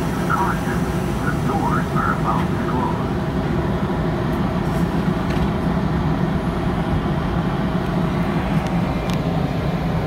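Metra commuter train standing at the platform with a steady low diesel rumble. Its bilevel car's sliding side doors close partway through, with a few faint knocks.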